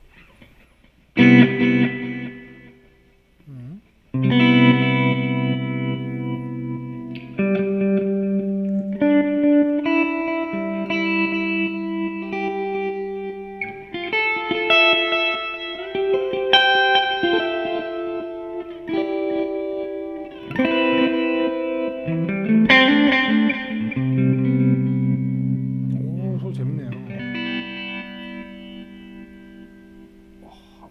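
Clean electric guitar, a Fender American Standard Stratocaster, played through a JHS Kodiak tremolo pedal into a Fender '65 Twin Reverb amp. It plays a slow passage of ringing chords and single-note melody lines, with a brief pause after the opening chord, and the notes die away near the end.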